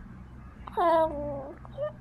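Three-month-old baby cooing: one drawn-out vowel sound lasting nearly a second, its pitch falling slightly, then a short coo near the end.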